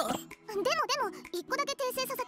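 A girl's high-pitched voice making two short, wavering, wordless vocal sounds over background music.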